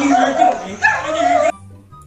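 Loud, drawn-out yelling voices over a video-chat connection, cut off abruptly about one and a half seconds in as the call disconnects, with faint background music underneath.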